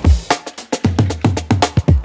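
Background music: a busy drum pattern of quick, sharp hits with deep kick drums, coming straight after a held chord cuts off.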